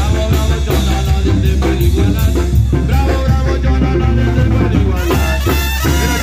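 Loud band music with brass and drums playing a steady, upbeat dance rhythm.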